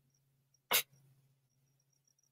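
A single short, breathy sound from the commentator's mouth a little under a second in, like a scoffing exhale, with no voiced tone in it; otherwise near quiet with a faint low hum.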